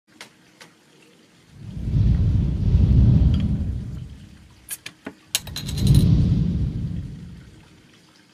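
A metal bottle opener prying the cap off a glass beer bottle, heard as a few sharp clicks about five seconds in, then a short metallic clatter as the cap comes free. Two long rumbling gusts of wind on the microphone are the loudest sound.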